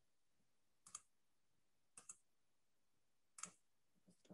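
Three faint, sharp computer clicks over near silence, about a second apart; the second is a quick pair.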